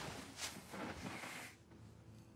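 Faint rustling of clothing and bedding as a man sits down on the edge of a bed, dying away to near silence after about a second and a half.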